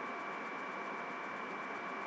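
Steady hiss with a thin, high, unchanging tone running through it: the background noise of a webcam microphone, with no other sound.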